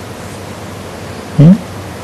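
Steady background hiss of an old broadcast recording, with a short rising "hmm?" from a man about a second and a half in.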